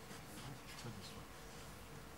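Quiet hall room tone with a low steady hum and faint scattered rustles and light clicks, as of handling at close range.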